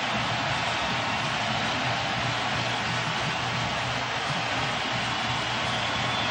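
A large stadium crowd cheering in a steady roar, with music playing underneath.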